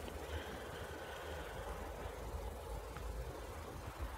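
Quiet outdoor background: a faint, steady low rumble with a light hiss, and no distinct events.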